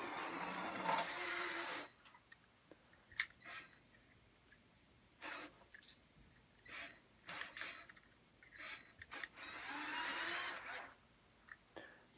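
The electric drive of a LEGO model truck, two LEGO L motors geared 1:1, whining as the truck drives across a wooden floor. It runs for about two seconds, then in several short bursts as the throttle is blipped, then in one more run of about a second and a half near the end.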